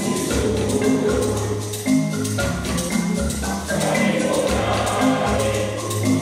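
A mixed recording of several large groups singing a Zulu-language song in chorus over a backing track.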